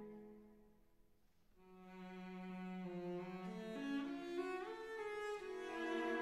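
Instrumental background music. A held note fades away, then a new phrase begins about a second and a half in, its notes stepping upward.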